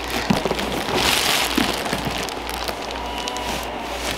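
Clear plastic bag crinkling and rustling as a padded baby product is drawn out of it and handled, strongest about a second in and easing off after that.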